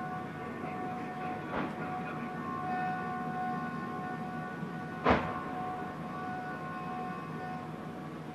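A base warning siren sounds as a steady, even alarm tone during a mortar attack. A faint sharp crack comes about one and a half seconds in, and a louder brief sharp sound about five seconds in.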